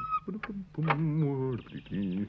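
A man's wordless voice, a hum or strained grunt whose pitch wavers up and down, starting just under a second in and lasting about half a second.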